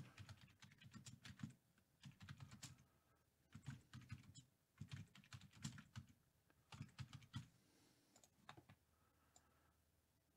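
Faint typing on a computer keyboard: short bursts of keystrokes with brief pauses between them.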